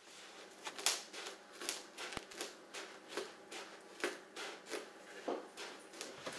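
Scissors snipping through a sheet of foil-faced insulation: a run of short, crisp, crinkly cuts at about three a second.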